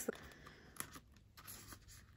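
Faint rustling and a few light taps of paper sticky notes being handled and slid into a plastic binder pocket sleeve.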